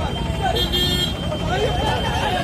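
Several men's voices talking over one another in a crowd around a street scuffle, over a steady low street rumble, with a thin steady high tone running through.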